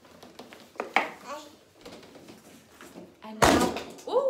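Handling noise as a piano accordion is taken off: scattered knocks and clatter with brief voice sounds, then a loud half-second rush of noise about three and a half seconds in.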